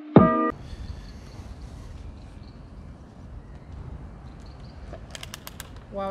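Background music ends about half a second in. A faint, steady noise with a low rumble follows, then a quick run of sharp clicks near the end.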